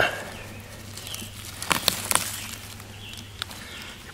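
A few short rustles and crackles of dry leaf litter and a mushroom being handled, over a faint steady low hum.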